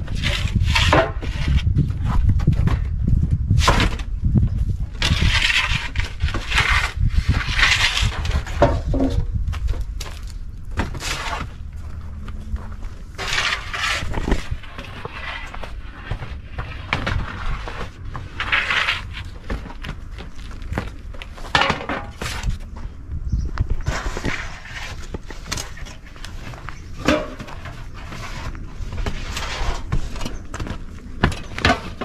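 Irregular knocks, scrapes and clatter as freshly baked round loaves are taken from a wood-fired oven and set down on a wooden table, with a steady low rumble underneath.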